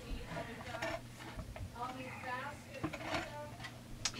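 Faint light metallic clinks and handling noise as the chainsaw's crankshaft is rolled round by hand, over a low steady hum. A faint voice murmurs about halfway through.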